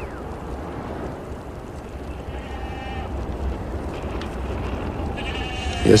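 Goats bleating faintly twice, a short call a couple of seconds in and a longer one near the end, over a steady low rumble.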